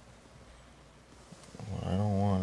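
A quiet stretch with only faint background hiss, then about one and a half seconds in a man's voice starts: a drawn-out, wavering vowel.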